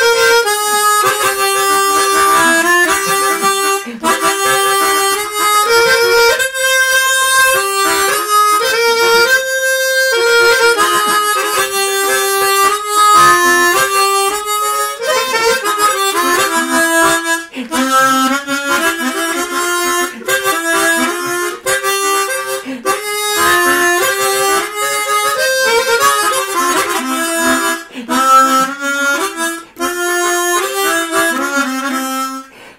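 Chromatic harmonica playing a melody of held notes, one after another, with the pitch moving step by step and dipping lower in the second half.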